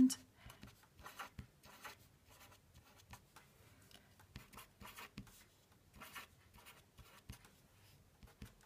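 Felt-tip pen writing numbers on paper: a run of short, faint strokes with small pauses between them.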